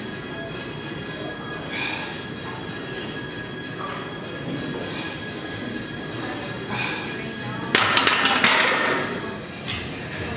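Gym background music over steady room noise, with a cluster of sharp metal clanks from a plate-loaded barbell near the end, followed by one more clank.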